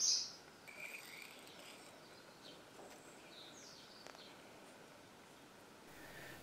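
Near silence, with a few faint, short bird chirps in the background.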